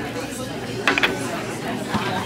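A glass seasoning shaker with a metal cap clinking briefly, two quick clinks about a second in, over a steady murmur of diners talking.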